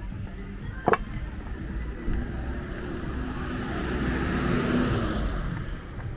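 A car passing on the street, its tyre and engine noise swelling to a peak about four to five seconds in and then fading. A short sharp click about a second in.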